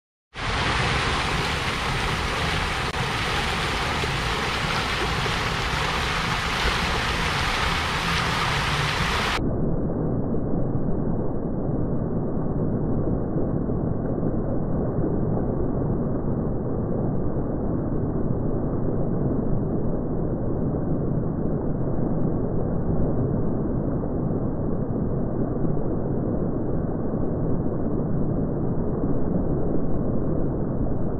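Fountain jets splashing into the basin, a steady rushing of falling water. About nine seconds in, the sound abruptly turns muffled, losing all its high end.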